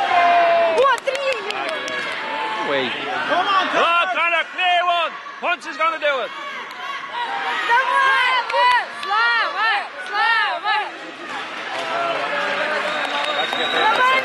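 Supporters shouting encouragement, several voices calling out short, repeated shouts in quick runs over a background of crowd noise.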